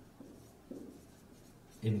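Marker pen writing on a whiteboard: faint scratches and rubs of the felt tip across the board as words are written.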